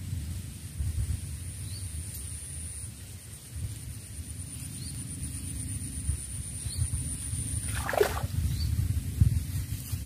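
Open marsh ambience: an uneven low rumble, a steady high-pitched whine with faint chirps every second or two, and one short falling call about eight seconds in.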